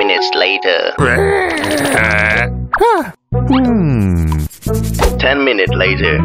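A cartoon character's nonverbal voice groaning and whining in sliding pitches, with one long falling slide near the middle, over background music.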